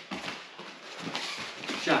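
Soft steps and shuffles of bare feet on rubber gym mats as two people move around in their stance. A called 'Jab' comes near the end.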